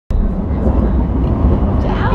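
Steady low rumble of a moving public-transport vehicle heard from inside the passenger cabin, with faint passenger voices mixed in.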